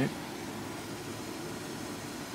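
Steady hiss with a low hum from a Class E solid-state Tesla coil running continuously.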